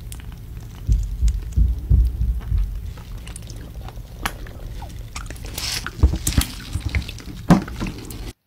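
Mustard squeezed from a plastic squeeze bottle onto a turkey leg, the thick sauce squelching out with handling bumps and small clicks, and a hiss of sputtering air a little past the middle. A knock near the end as the bottle is set down on the table.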